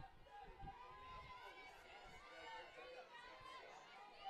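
Faint ballpark ambience: distant voices of players and spectators calling out and chattering, some calls drawn out.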